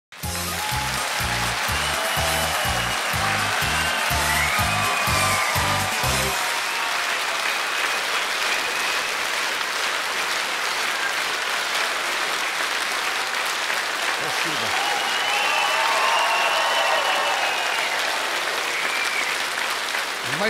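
Audience applauding steadily over upbeat entrance music; the music's heavy beat stops about six seconds in, and the applause carries on with lighter melodic lines over it.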